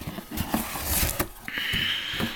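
A cardboard mailer box being opened by hand: a few light knocks and rubs of the cardboard, then a steady scraping rustle starting about three-quarters of the way in as the lid is pulled open.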